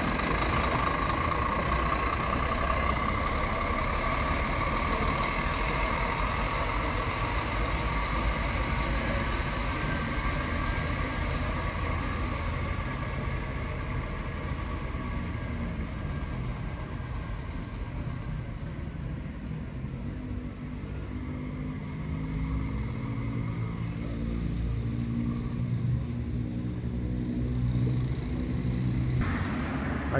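Diesel engine of a coach moving slowly away, a steady engine sound with a whine on top that fades over the first half. A lower engine drone with a slowly shifting pitch carries on after that.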